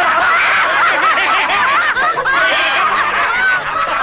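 A crowd of men and women laughing loudly together, many voices overlapping.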